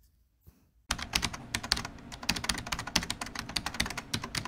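Olivetti Lettera 22 portable typewriter being typed on fast: a rapid run of key and type-bar clacks, about eight to ten a second, starting about a second in.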